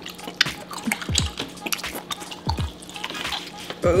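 Background music with a slow beat, under wet clicking mouth sounds of someone biting and chewing a juicy piece of hotpot-boiled octopus.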